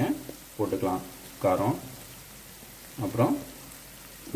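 Onion-tomato masala frying in oil in a non-stick pan: a soft, steady sizzle, with three short bursts of a person's voice over it.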